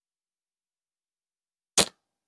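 A single sharp snap near the end as the Cygnus Bold slingshot is loosed: its yellow flat bands and pouch slapping forward on release.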